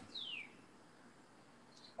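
A single short high chirp gliding down in pitch, then near silence for the rest of the moment.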